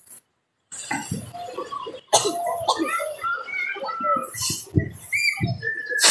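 Several people's voices talking in the background, with no clear words. The sound drops out briefly just after the start.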